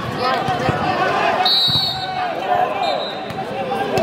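Crowd and players shouting and chattering throughout, with a few sharp thuds of a volleyball bouncing on the court. A short, high referee's whistle sounds about a second and a half in, signalling the serve.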